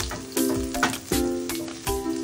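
Background music with a steady beat, a chord struck about every three quarters of a second, over chopped garlic sizzling in oil in a frying pan.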